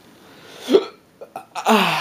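A man's short wordless vocal sound, rising in pitch, about two-thirds of a second in, followed by a couple of faint clicks and a longer vocal sound falling in pitch near the end.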